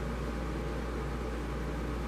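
Steady background hiss with a low hum and no distinct events: the room tone of an indoor space during a pause in speech.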